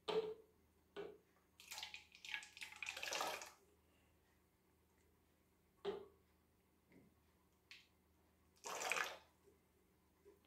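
Liquid poured from a small plastic bottle into a larger plastic bottle in several separate short, splashy bursts and drips. The longest bursts come about two to three and a half seconds in and again near nine seconds.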